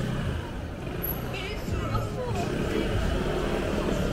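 Delivery motor scooter's engine running at low speed close by, amid the chatter of passers-by.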